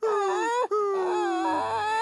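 A cartoon character's voice wailing in two long, wavering cries, the second slowly falling in pitch.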